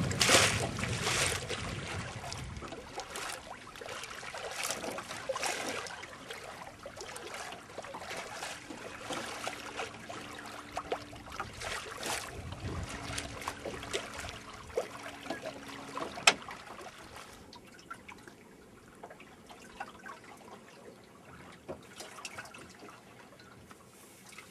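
Water trickling and lapping along the hull of a small wooden sailboat moving slowly through the water in a dying breeze: irregular small splashes that grow fainter over the second half.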